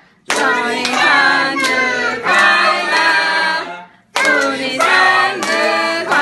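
A small group of adults and children singing together, clapping along in time. The sound breaks off abruptly to near silence twice, right at the start and about four seconds in.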